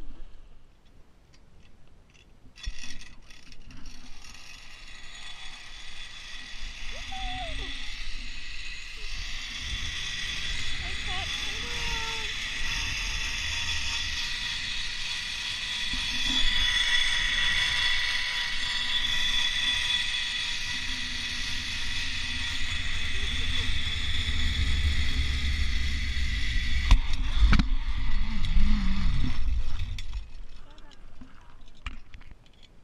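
Zipline trolley pulleys running along the steel cable: a steady whir with high ringing tones that starts a couple of seconds in and builds, while wind rumbles on the helmet-camera microphone more and more toward the end. The whir stops about three seconds before the end with a knock as the rider arrives.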